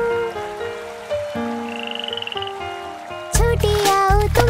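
Cartoon frog croak sound effect, a rapid fluttering croak in the middle, over a soft instrumental music interlude. The full song backing with bass comes back in loudly near the end.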